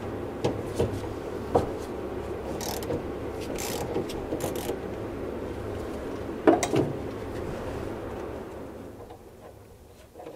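Ratchet and socket clicking and clinking as the fill plug on a 1955 Porsche 356 Speedster's steering box is undone. Underneath runs a steady hum from a garage heater, which dies away near the end.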